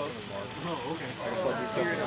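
Indistinct conversation of a small group of people talking in the background, several voices overlapping.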